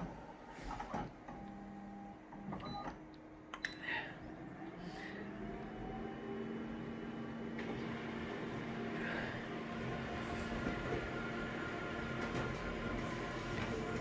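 Konica Minolta colour photocopier scanning and then printing a copy: a few clicks and short whirs in the first four seconds, then a steady mechanical whir and hum that builds from about five seconds in as the copy is printed.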